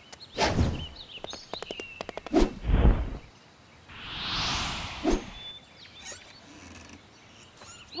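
Cartoon sound effects: a sharp hit, a quick run of taps and two heavy thuds, then a whoosh that swells and fades as a flying pony streaks past, and a last tap.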